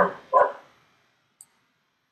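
A spoken word trails off, then a single short vocal sound about a third of a second in, followed by quiet with one faint click.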